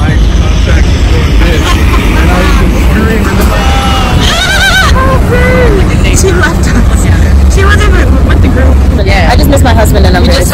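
Moving car's steady low road rumble, with several indistinct voices talking and calling out over it.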